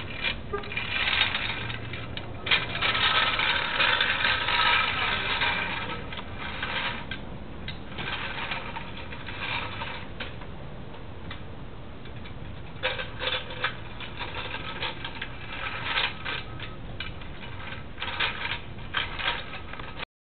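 Vintage Smith-Miller metal toy dump truck dragged on a string over rough concrete, its wheels rolling and its metal body and dump bed rattling and clattering irregularly. The rattle is louder in the first few seconds and again near the end, and quieter in between.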